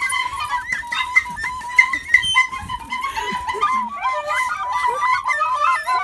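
A small end-blown pipe playing a simple melody, held notes at first and then quicker notes stepping up and down from about three seconds in.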